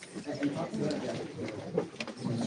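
Crowd chatter: many people talking at once, an indistinct hubbub of voices.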